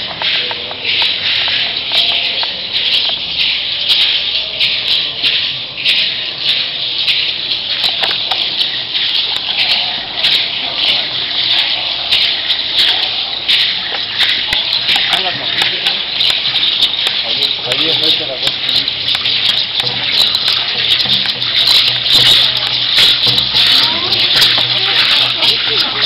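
A dense, continuous rattling shake, made of many small clicks packed together, from the rattles of a group of Mexica dancers, with crowd voices underneath. It grows somewhat louder in the last few seconds.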